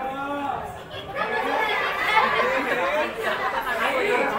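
Speech only: several voices talking over one another as chatter, briefly dropping off about a second in, then busy again.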